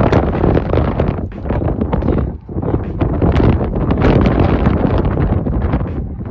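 Wind buffeting the phone's microphone: a loud, gusting rumble that eases briefly about two and a half seconds in.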